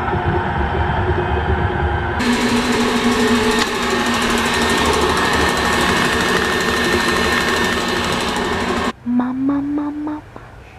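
KitchenAid Artisan stand mixer running steadily with a motor whine as it mashes cooked potatoes. Its sound grows brighter and hissier about two seconds in, then stops suddenly near the end.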